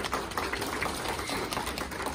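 A small audience clapping, a dense run of quick claps.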